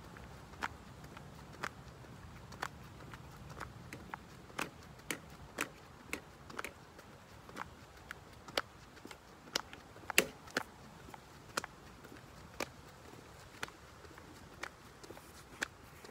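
Jumping jacks: a sharp slap about once a second with each jump, a few of them doubled, the loudest about ten seconds in.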